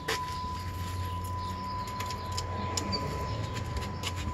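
A steady high electronic tone held at one pitch without a break, over a low hum and a few faint clicks.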